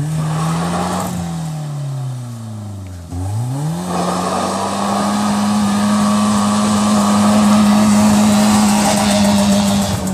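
BMW E36 3 Series sedan's engine revving hard as it drifts on gravel. The revs climb, then fall away for the first three seconds; about three seconds in they jump and are held high and steady with the rear wheels spinning, gravel hissing under the tyres.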